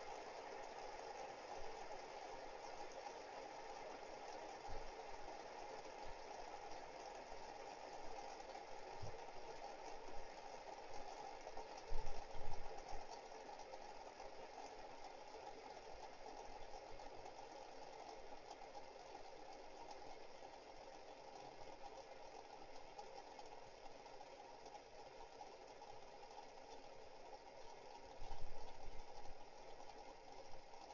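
Several metal fidget spinners whirring steadily on a desk, their bearings giving a faint, even hum. A few low thumps break in, the loudest about twelve seconds in and another near the end.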